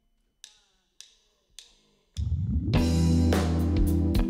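Three evenly spaced sharp clicks, a count-in, then a live reggae band comes in about halfway through, with heavy bass, drums and electric guitars playing together.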